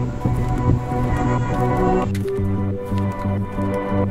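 Background music with held notes over a pulsing bass line; the upper parts thin out about two seconds in.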